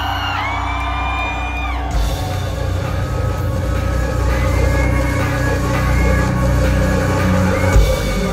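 Live rock band playing through a club PA, with amplified guitars, bass and drums. A high note is held for about two seconds before the full band comes in.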